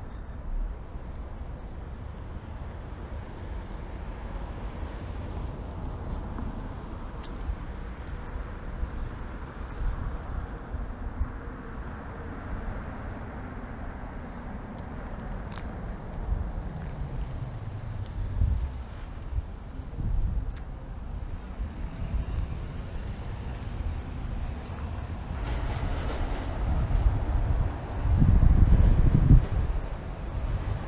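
Steady low rumble of road traffic outdoors, louder in the last few seconds.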